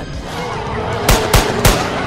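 Background music with three gunshots in quick succession about a second in.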